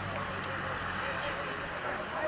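Indistinct overlapping voices of players and sideline spectators chatting and calling out, with no clear words, over a faint steady low hum.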